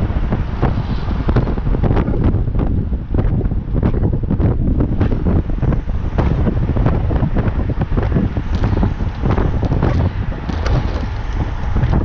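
Loud wind noise on the microphone of a bicycle-mounted action camera at racing speed, with many short clicks and knocks scattered through it.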